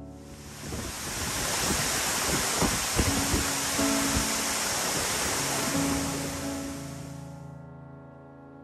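Steady rushing of a large waterfall, heard close, swelling in over the first second and fading out near the end, with soft piano music underneath.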